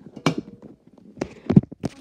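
Handling noise from a camera being grabbed and moved: a few sharp knocks, the loudest about one and a half seconds in, with rubbing and rustling between them.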